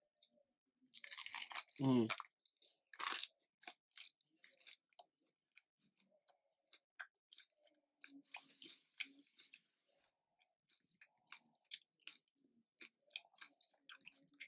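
Close-up eating sounds of crispy Popeyes fried chicken: a loud crunchy bite about a second in, a short 'mmm', another crunch, then steady chewing with many small crunches and mouth clicks.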